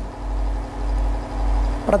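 A pause in a man's speech filled by a steady low hum with a faint hiss over it; the voice comes back near the end.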